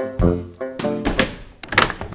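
Light background music, then two loud knocks from a broken door that won't stay shut, the second just before the end.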